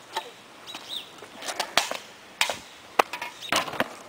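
A plastic wheeled trash can being knocked over onto a concrete sidewalk: a few separate sharp knocks and clatters spread over the last three seconds. A bird chirps faintly about a second in.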